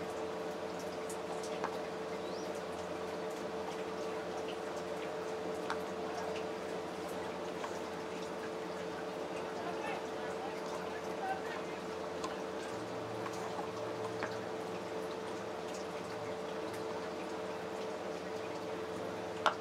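Steady background noise with a constant hum and faint, indistinct voices, broken by a few faint clicks.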